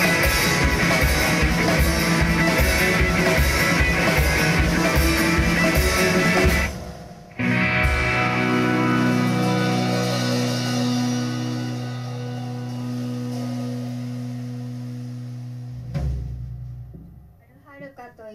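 Live rock band of electric guitar, keyboard and drum kit playing a song's closing section over a steady kick-drum pulse. About six and a half seconds in, the band stops suddenly, then a final held chord rings out and slowly fades, ended by one last hit near the end.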